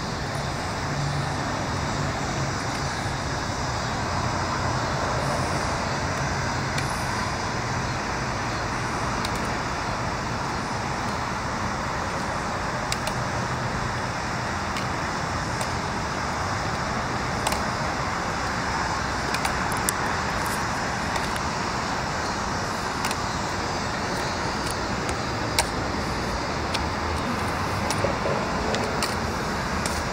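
Steady outdoor traffic noise, an even rush, with a low hum in the first few seconds and a few faint, scattered clicks in the second half.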